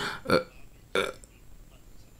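Three short throaty vocal sounds from a man pausing between phrases, the second one dropping in pitch.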